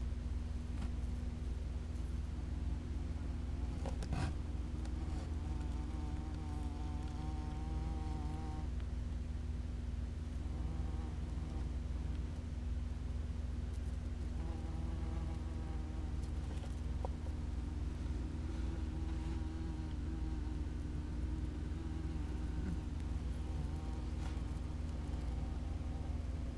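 German yellow jackets (Vespula germanica) buzzing in flight around their nest entrance. The wing buzz comes and goes, strongest about six seconds in and again past the middle, over a steady low hum.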